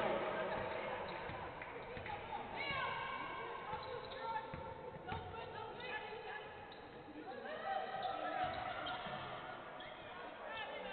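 Basketball being dribbled on a hardwood court during play, with short high sliding sounds a few times, around three, five and eight seconds in.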